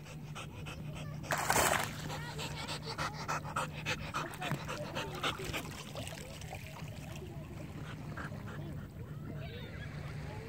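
A dog whining in short, wavering cries over splashing and sloshing water as a pit bull dives with its head under the lake surface. There is a louder splash about a second and a half in.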